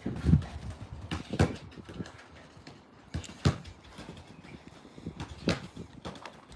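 A football kicked and rebounding off a wall: about four sharp thuds spaced a second or two apart, with fainter touches of the ball between.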